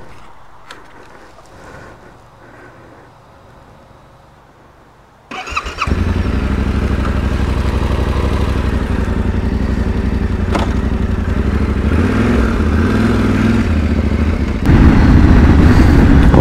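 Yamaha Ténéré 700's parallel-twin engine is started about five seconds in: a brief crank on the electric starter, then it catches and runs steadily. Near the end it gets louder as the bike is ridden.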